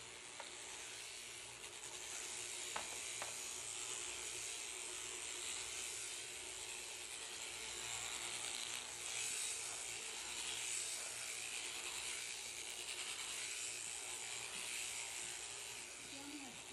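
Sheep shearing handpiece running steadily, its cutter chattering across the comb as it cuts through a Finn sheep's long fleece.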